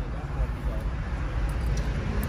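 Faint, indistinct voices over a continuous low rumble of the surroundings.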